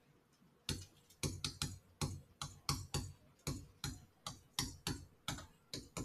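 Stylus tip tapping and clicking on a digital writing screen while handwriting, a quick uneven series of sharp clicks about three a second that starts just under a second in.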